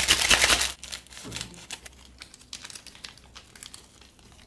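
A small seasoning sachet shaken hard, a dense crackling rattle, for about the first second, then softer, irregular crinkles and clicks of the packet as it is opened and its powder shaken out over noodles.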